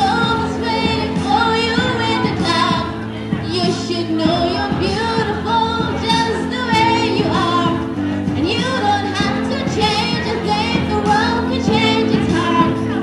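A woman singing into a handheld microphone, her voice held in long notes with vibrato, over instrumental accompaniment of sustained chords that change every couple of seconds.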